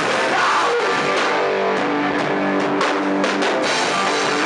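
Hardcore punk band playing live: distorted electric guitars and a drum kit, loud, with a quick run of drum hits about three seconds in.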